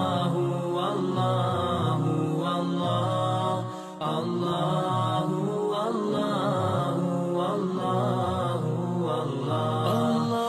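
Devotional vocal chanting laid over the footage as a soundtrack: voices sing a slow, continuous chant, with a brief drop in level about four seconds in.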